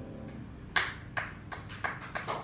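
The last chord of an upright piano dies away, then a few people start clapping about three-quarters of a second in, with sparse, irregular claps.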